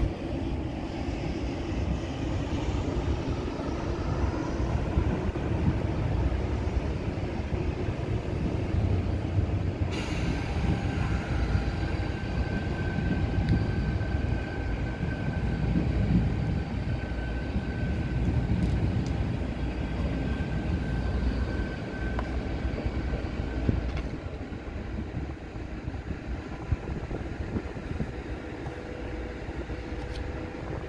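Two coupled Arriva Stadler FLIRT multiple units passing empty, with a steady low rumble of wheels on track. From about ten seconds in a steady high whine joins the rumble and then eases off as the trains draw away.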